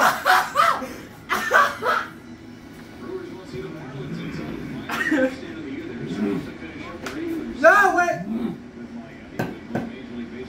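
Several people laughing and groaning, with short pained cries, reacting to the burn of a super-hot peanut. A short knock or slap near the end.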